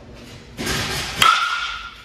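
Two-piece composite USSSA baseball bat hitting a pitched baseball hard: a short rush of noise, then a sharp crack about a second in, followed by a clear ringing tone from the barrel that fades over about half a second.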